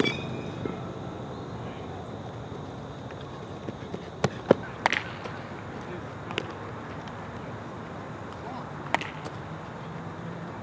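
Baseball practice: a metal bat pings off a ball right at the start, then several sharp cracks and smacks of balls being hit and caught in a leather glove during infield ground-ball work, over a steady outdoor background hum.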